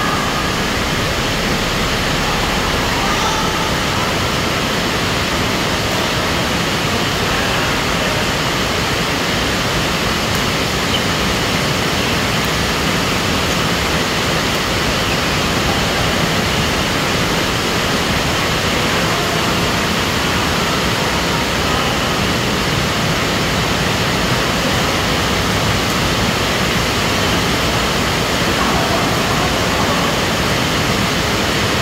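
Loud, steady rushing noise, even and unchanging, with no distinct racket strikes standing out from it.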